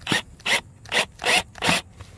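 A Craftsman cordless drill driving a set screw into a plastic NDS pop-up emitter, in five short bursts about 0.4 s apart.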